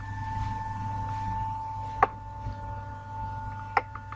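Steady electrical hum with a thin, high, steady whine over it, and two short sharp clicks, about two seconds in and near the end.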